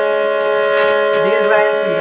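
Harmonium reeds sounding a steady held chord. A man's voice comes in over it about a second in, with a few faint clicks.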